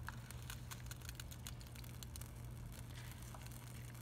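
Plastic spoon stirring and mashing chickpeas in a thick coconut-milk sauce in a pot, giving soft, irregular clicks and scrapes over a steady low hum.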